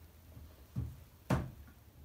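Two knocks about half a second apart, the second louder and sharper, over a faint low hum.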